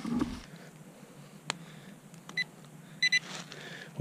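Minelab Equinox 800 metal detector giving a short beep about two seconds in, then a quick run of three or four beeps near the end, sounding off a buried metal target. A faint knock comes at the start.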